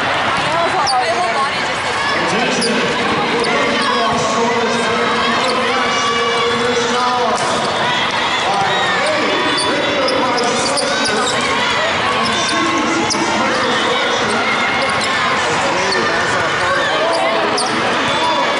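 Busy indoor volleyball hall ambience: a steady babble of many players' and spectators' voices, with repeated sharp smacks of volleyballs being played and bouncing on the courts.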